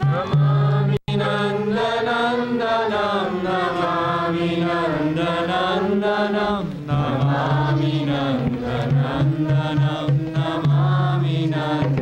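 Devotional chanting: sung voice lines that rise and fall over a steady low drone. The sound cuts out for an instant about a second in.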